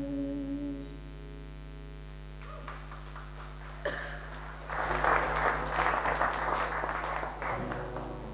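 The last held note of a song, voice with acoustic guitar, fades out within the first second. After a pause a few scattered claps start, then audience applause for about three seconds, dying away near the end.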